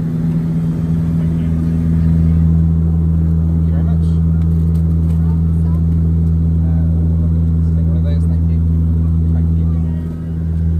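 Cabin drone of a Saab 340 twin-turboprop airliner in cruise: a loud, steady low hum from the propellers, carrying a couple of unwavering low tones.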